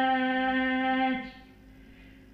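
A woman's voice in a hawfi song holds one long, steady note that ends about a second in, followed by a brief quiet lull.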